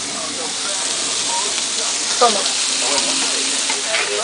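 Fish fillets sizzling on a hot flat griddle: a steady, even hiss of frying.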